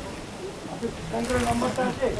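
People talking in the background, indistinct; the voices come in about halfway through and grow louder toward the end.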